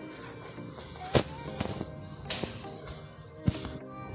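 Faint background music with steady held notes, broken by a few sharp knocks, the loudest about a second in and another near the end.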